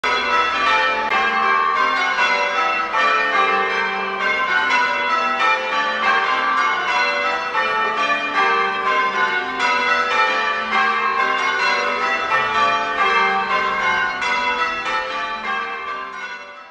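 Tower bells rung in changes: a steady, unbroken run of bell strikes, one bell after another in quick succession, each ringing on under the next.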